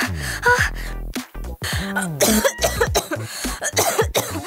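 Comic background music with sliding, falling tones, over a woman coughing and clearing her throat.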